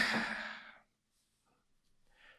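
A man's sigh: one breathy exhale close to the microphone that fades away within a second, followed by near silence.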